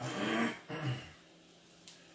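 A man's throat-clearing cough: one rough burst, then a brief voiced sound under a second in. A faint tap follows near the end.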